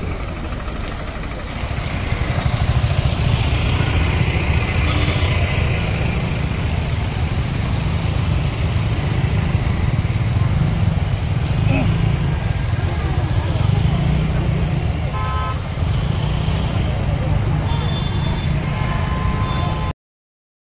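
Slow road traffic: car and motor-scooter engines running with a steady low rumble, and a brief horn toot about three-quarters of the way through.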